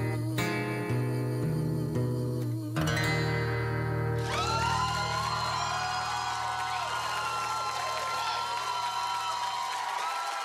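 Acoustic guitar playing the song's closing chords, the last one left ringing. About four seconds in, a studio audience breaks into cheering and applause over the fading chord.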